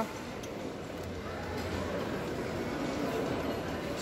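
Steady background hubbub of a busy indoor space, with indistinct distant voices and a faint low hum, and no close sounds standing out.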